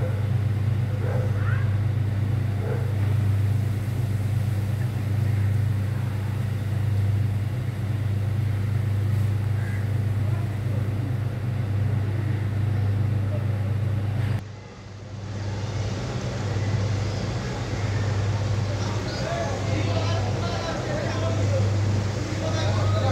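A steady low engine hum, like a motor vehicle idling, with faint voices in the background. The sound dips briefly at a cut about two-thirds of the way through, then the hum carries on with more voices.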